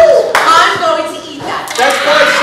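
A group of people laughing loudly, with one sharp hand clap near the start and a quick few claps near the end.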